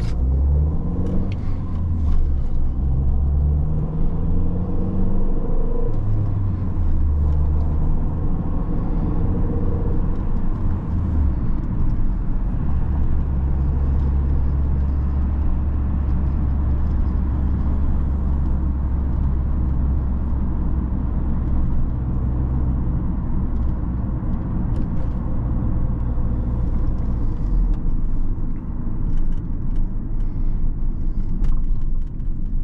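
Inside the cabin of a 2001 Mini One R50, its 1.6-litre four-cylinder petrol engine pulls away and accelerates through the gears of its five-speed manual. The engine note rises in pitch and drops at each of a few shifts over the first ten seconds or so. It then settles to a steady low drone at cruising speed.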